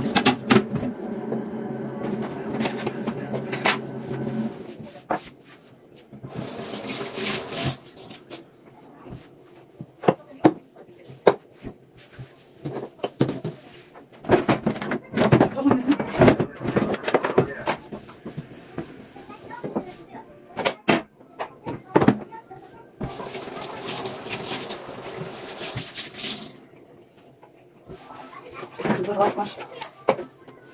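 Hand-washing dishes at a kitchen sink: the tap runs in spells, and a frying pan and the metal plates of a sandwich toaster clink and knock against the sink as they are scrubbed.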